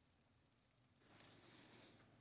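Near silence: room tone, with one faint click a little after a second in.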